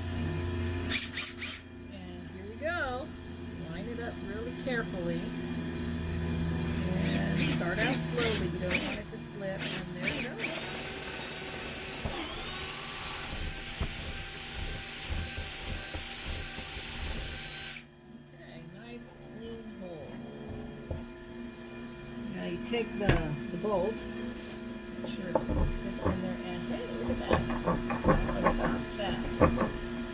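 Cordless drill boring a hole through a wooden board, running steadily for about seven seconds and then stopping abruptly about two-thirds of the way in.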